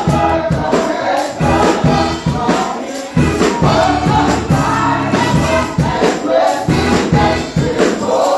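Gospel praise team of several men and women singing together through microphones and a sound system, over instrumental accompaniment with strong bass and a steady percussive beat.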